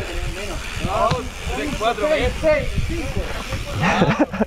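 Mountain bike rolling downhill on a dirt trail: a steady rumble and wind rush on the microphone, with voices talking over it.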